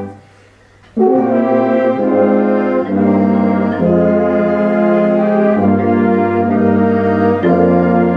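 High school wind ensemble playing a slow passage of held chords, with the brass prominent. The band stops briefly at the start and the room's ring dies away, then the full ensemble comes back in together about a second in and moves from chord to chord every second or so.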